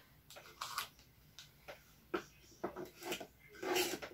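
Foil wrapper of a small chocolate truffle crinkling as it is handled and opened: short, irregular crackles and rustles, the loudest near the end.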